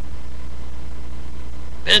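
A steady low hum in the room during a pause in speech, then a man starts talking near the end.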